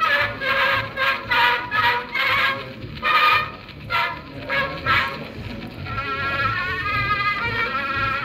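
Edison Gem phonograph playing a 124-year-old wax cylinder through its horn: thin, nasal-sounding music with no treble, a run of short notes about twice a second, then longer held, wavering notes from about six seconds in.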